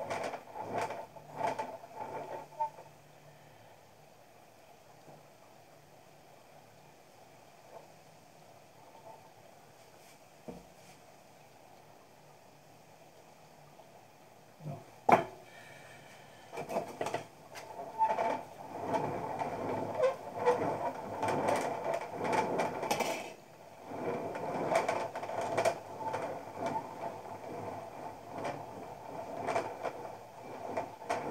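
Hands and a small tool scraping and smoothing the wall of a soft clay pot: irregular rubbing at first, quiet for a long stretch, a sharp click about fifteen seconds in, then steadier scraping and rubbing through the second half.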